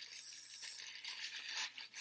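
Tissue paper stuffed inside a shoe rustling and crinkling steadily as the shoe is handled, with a sharp crackle at the end.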